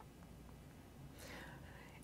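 Near silence: faint room tone with a low hum, and a soft intake of breath in the second half.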